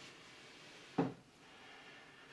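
A single short knock about a second in, a heavy statue bumping against the wooden display shelf as it is lifted; otherwise faint room tone.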